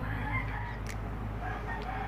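Faint bird calls with wavering pitch, over a low steady hum.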